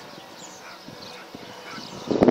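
Faint outdoor background with a few faint, short calls from distant animals.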